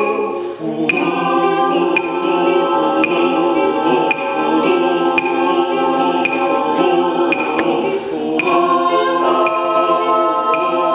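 Mixed choir of women's and men's voices singing sustained, slowly changing chords, with a brief dip and a new chord just under a second in and another chord change near the end. Short, sharp strikes sound about once a second over the singing.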